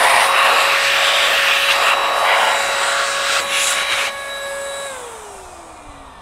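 Chemical Guys ProBlow handheld car dryer running at full speed, its motor whining steadily over a loud rush of air as it blows water out of a car's fuel filler recess. About five seconds in it is switched off and the whine falls in pitch as the motor spins down.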